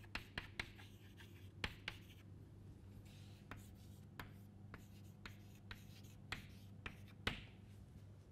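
Chalk writing on a blackboard: irregular sharp taps and light scratches as the chalk strikes and drags across the board, over a faint low steady hum.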